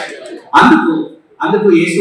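A man speaking into a microphone in short phrases, with a brief pause just past a second in.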